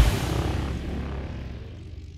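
Electronic music ending on one final hit with a deep bass note, its tail fading steadily away.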